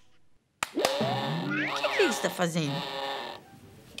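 A person's voice making wordless sounds that slide up and down in pitch, starting about half a second in after a brief silence and fading out shortly before the end.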